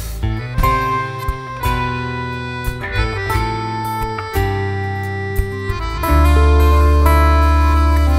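Instrumental break of a live folk band: acoustic guitar playing picked notes over a bass line, with the band coming in louder and fuller about six seconds in.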